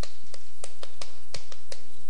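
Chalk tapping and clicking against a blackboard in short, uneven strokes as words are written, over a steady low hum.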